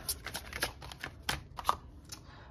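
A deck of tarot cards being handled and shuffled in the hands, then fanned so a card can be drawn. It gives a run of light card snaps and clicks, with two sharper snaps past the middle.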